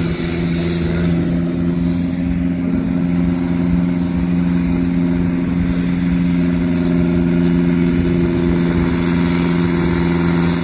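Landini 9880 tractor's diesel engine running hard at a steady high pitch under full load, dragging a weight-transfer sled in a pulling run.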